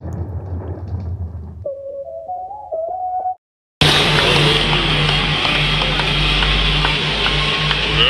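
Background music for about three seconds, cut off abruptly, then after a brief gap the loud din of a basketball arena crowd with music playing over it.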